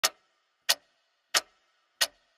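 A ticking sound effect: three sharp clock-like ticks, evenly spaced about two-thirds of a second apart, each with a short ringing tail.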